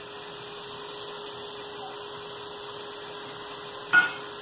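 A steady hiss with a faint steady hum under it, and one short knock near the end.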